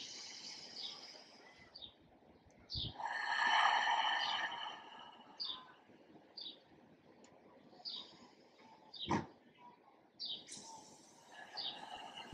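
Slow, deep breaths in and out, the loudest a long exhale a few seconds in, with short bird chirps outside every second or two and a single click a little after nine seconds.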